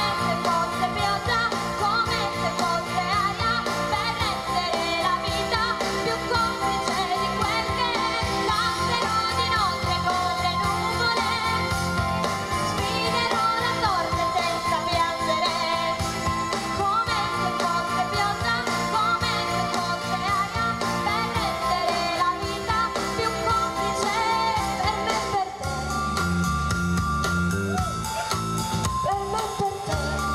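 A woman singing an Italian pop ballad live into a handheld microphone over backing music. About 25 s in, the accompaniment changes to a plainer pattern with a steady low beat.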